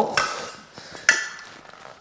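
Two metallic clinks about a second apart from a thin steel drywall profile offcut being handled, each ringing briefly, the second sharper.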